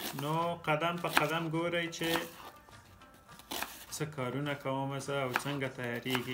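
A man speaking, with the knife tapping on a wooden cutting board as it slices an onion. The taps are clearest in a pause about two to four seconds in.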